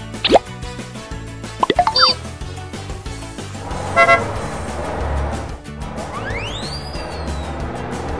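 Cartoon sound effects over children's background music: a few quick plops near the start, a short car-horn toot about four seconds in, and a long whistle that glides up and then down near the end.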